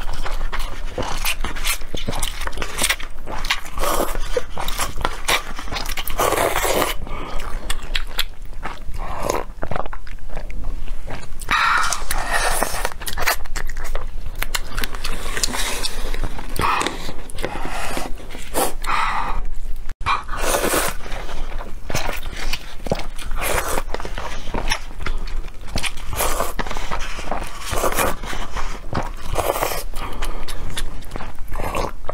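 Close-miked eating sounds: glass noodles in spicy broth being slurped and chewed, a steady run of wet mouth noises with a brief break about two-thirds of the way through.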